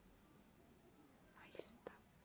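Near silence with a brief faint whisper or breath about a second and a half in.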